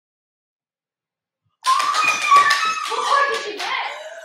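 A woman's high-pitched excited squealing with quick hand claps, starting suddenly about a second and a half in after silence.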